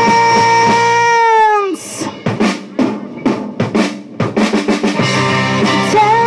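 Live rock band holding a long note that falls away about a second and a half in. The band then drops out for a drum-kit fill of about a dozen snare and tom hits that come faster toward the end. The full band crashes back in near the end.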